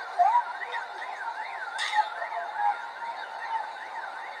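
A police siren in a fast yelp, rising and falling about three times a second. Short rising cries come near the start, and a single sharp crack sounds nearly two seconds in.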